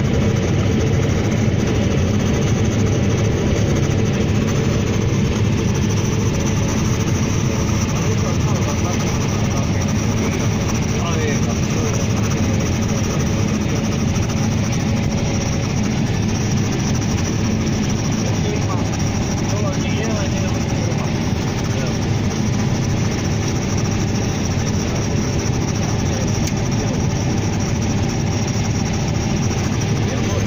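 Combine harvester running steadily while harvesting maize, heard from inside the cab: a constant, unchanging drone of engine and threshing machinery.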